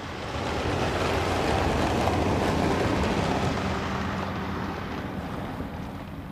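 A car driving past, its engine and tyre noise swelling to a peak midway and then slowly fading away.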